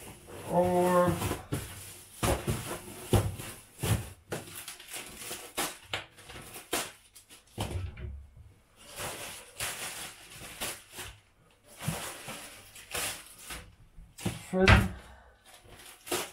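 Plastic bags rustling and crinkling in quick, irregular bursts while bread rolls are handled and bagged, with a few soft knocks on the counter.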